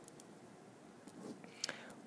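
Faint scratching of a pen drawing on paper, with a couple of light taps near the end.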